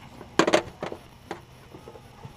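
Objects on a boat's console clattering and knocking as they are rummaged through for pliers: a loud double clatter about half a second in, then two lighter knocks.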